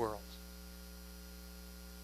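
Steady electrical mains hum, a set of even unchanging tones, at a low level. A man's last spoken word trails off right at the start.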